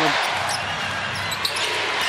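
A basketball being dribbled on a hardwood court, with sneaker squeaks, over the steady noise of the arena crowd.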